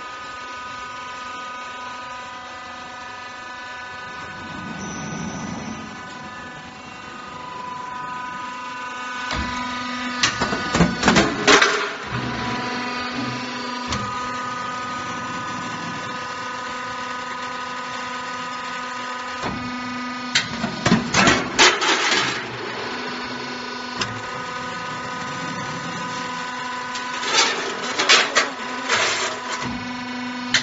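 Floor deck roll forming machine running: a steady mechanical hum made of several level tones, broken three times by a burst of rapid, loud clattering knocks lasting about two seconds each.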